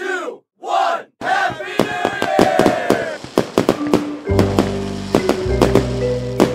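A crowd shouting the last two counts of a New Year countdown, then cheering as fireworks crackle and bang in quick succession. About four seconds in, music starts under the continuing firework pops.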